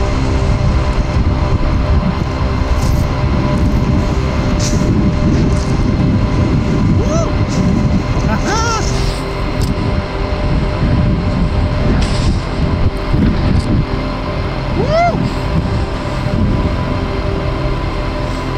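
Wind rushing over the microphone of a snowboarder's action camera, together with the board hissing through deep powder snow. A few brief wordless whoops cut through it about a third of the way in, halfway, and again later.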